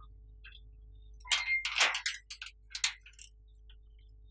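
A metal gate latch being worked: a quick cluster of sharp clicks and clanks in the middle, one with a brief metallic ring, over a faint steady hum.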